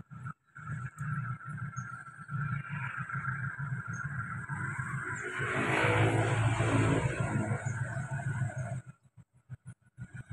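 Distant diesel engine of a CC 201 diesel-electric locomotive, rumbling as the locomotive runs light and slowly approaches, swelling louder in the middle. It cuts off suddenly near the end.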